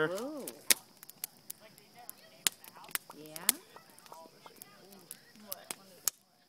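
Wood campfire crackling, with sharp pops scattered irregularly through, a few loud ones standing out.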